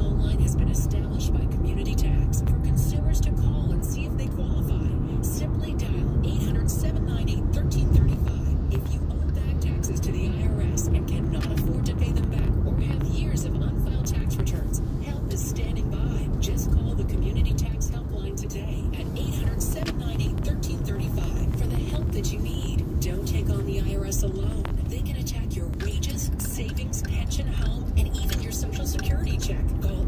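Inside a moving car: a steady low rumble of engine and tyre road noise, with a radio playing faintly in the cabin.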